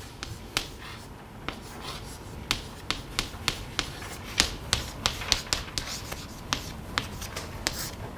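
Chalk writing on a blackboard: a run of sharp, irregular taps with short scratches between, about two or three a second, as each stroke of a formula goes on.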